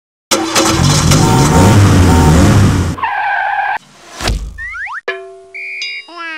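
Edited intro sound effects: a loud car-like engine noise for about three seconds, then a sharp whoosh and a run of cartoon tones, with rising glides followed by a boing-like falling glide near the end.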